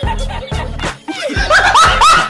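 Background music with a low beat. About one and a half seconds in, high-pitched laughter comes in as rapid repeated bursts.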